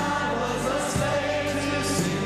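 Church choir singing a worship song.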